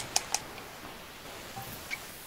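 Three quick crackling clicks, then a steady hiss of static from a participant's microphone coming through a voice call. The static sounds like rain.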